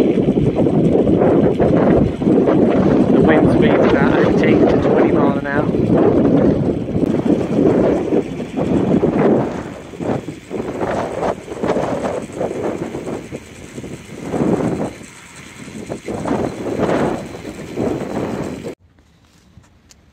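Gusty wind buffeting the microphone, loudest for the first several seconds, then easing and rising again in gusts. It cuts off suddenly a little before the end.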